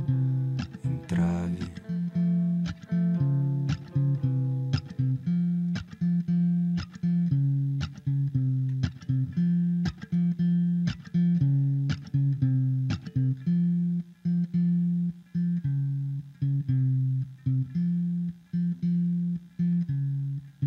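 Acoustic guitar picked in a steady, repeating pattern of plucked notes over ringing low notes, an instrumental passage with no singing.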